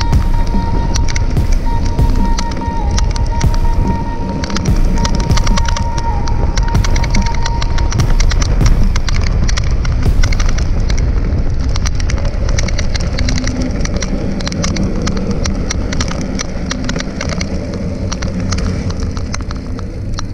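Background music with a steady beat, fading out over the last several seconds.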